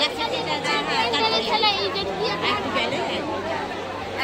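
Crowd chatter: many voices talking over one another, with some high, quick calls rising above it.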